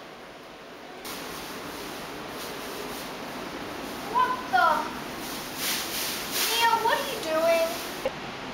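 A boy's voice speaking a few short phrases, with a steady background hiss that steps up about a second in.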